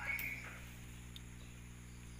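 A brief rustle of a cardboard box flap being handled, then a quiet room with a low steady hum and one faint click about a second in.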